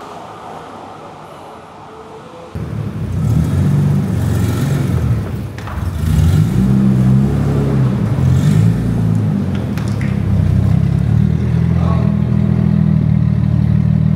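Nissan Skyline R33's engine running at low speed as the car moves slowly, a deep uneven rumble that comes in about two and a half seconds in.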